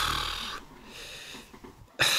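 A man's long, breathy sigh: a strong rush of breath at first, easing after about half a second into a quieter exhale that fades out.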